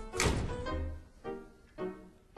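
A heavy thud just after the start, then short chords of scene-change music from the theatre band, repeated about twice a second.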